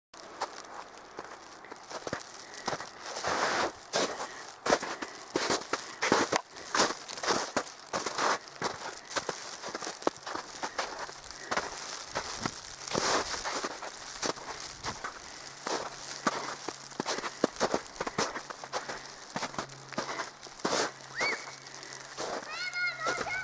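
Footsteps crunching through snow and dry brush, an irregular run of crunches and rustles as the walker pushes past twigs and dead grass.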